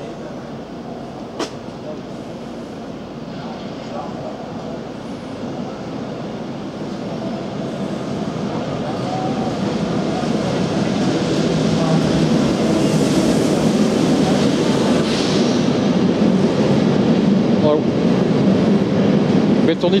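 Locomotive-hauled passenger train pulling into the station, its rumbling running noise growing steadily louder over the first half and then holding loud and steady as the coaches roll past. A single short click sounds about a second in.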